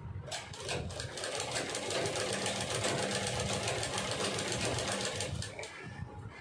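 Black Sandeep sewing machine stitching at a steady, fast pace: an even run of rapid needle strokes. It starts just after the beginning and stops shortly before the end.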